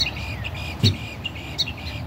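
Small birds chirping in quick, repeated short notes, several calls overlapping: agitated calling set off by the woodchuck in the yard.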